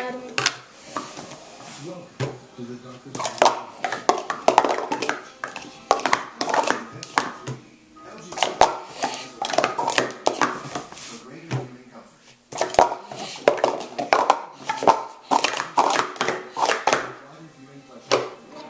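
Hard plastic sport-stacking cups clattering as they are rapidly stacked up and down on a mat: three bursts of quick clicks with short pauses between them.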